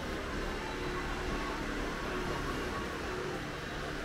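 Steady background noise of a covered shopping arcade, an even hiss and hum with no distinct events.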